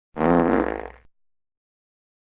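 A buzzing, blown mouth noise of about a second, standing in for an explosion, with a low rumble beneath a steady pitch. It cuts off abruptly about halfway through.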